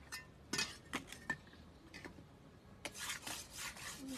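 A kitchen cleaver being sharpened on a stone, faint: a few light clinks of the steel blade at first, then from about three seconds in a quick run of scraping strokes of steel on stone.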